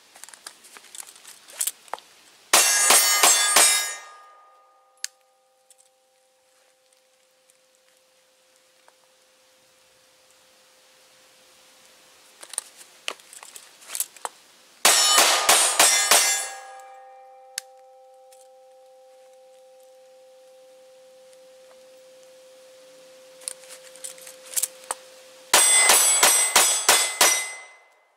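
Three rapid strings of pistol shots, each lasting a second or two, with steel targets clanging under the hits and then ringing on in a steady tone for several seconds. Faint clicks come in the quiet stretches before each string, as the pistol is drawn from the flap holster.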